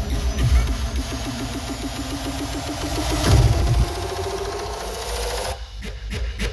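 Fast electronic dance music played from a DJ's decks: a rapid stuttering repeated note, a heavy low hit about halfway through, then a rising sweep that thins out near the end.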